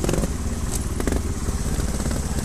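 Trials motorcycle engine running with a steady low rumble, with two sharp knocks, one a little under and one about a second in.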